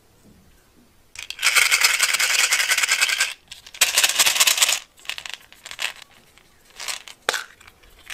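Small plastic beads rattling and clattering in a metal muffin tin as a doll is pushed down into them. Two dense bursts, one of about two seconds and one of about a second, then a few lighter clicks near the end.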